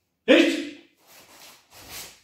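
A group of kenjutsu students cutting with wooden practice swords: one sudden loud burst about a quarter second in that fades within half a second, then fainter swishing and shuffling.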